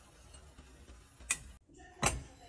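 A single sharp knock a little past halfway, typical of a hard raw potato bumping the side of a stainless steel pot of water, over a faint steady hiss.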